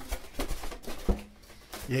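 Polystyrene foam packing and a cardboard box being handled: a few short rustles and knocks in the first second, then quieter handling.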